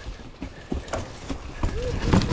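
Mountain bike rolling down a rough, leaf-covered trail: irregular knocks and rattles from the tyres and suspension hitting roots and rocks over a low rumble. Near the end a brief pitched sound rises and falls.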